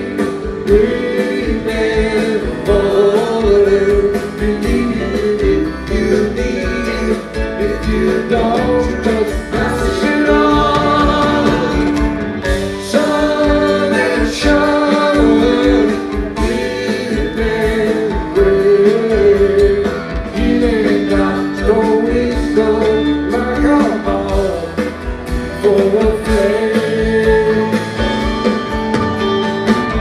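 Live rock band playing: electric guitars, bass and drums, continuing without a break.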